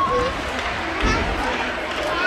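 Indistinct chatter of people in a large gym hall, with a low thump about a second in.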